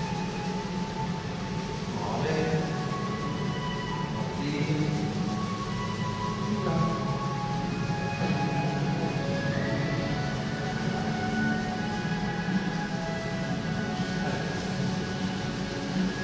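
Slow, calm background music with long held notes over a steady low drone.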